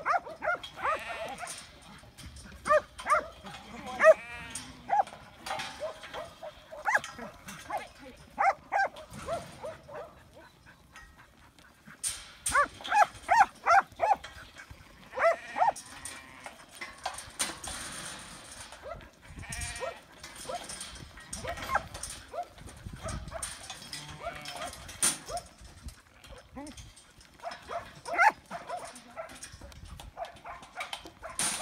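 Sheep bleating in the yards, mixed with a working kelpie barking as it pushes them up. The calls come in runs of short cries, thickest in the first few seconds, again from about twelve to sixteen seconds in, and once more near the end.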